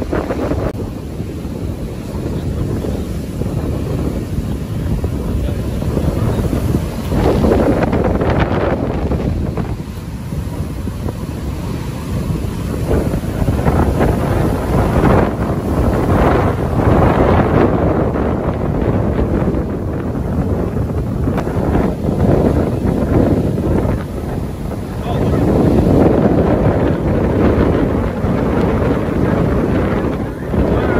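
Strong storm wind buffeting the microphone in gusts, over the steady noise of heavy surf breaking.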